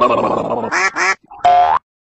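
Cartoon logo sound effects: a dense burbling jumble, then two short squawky pitched calls, and a longer call that rises at its end and cuts off abruptly into silence.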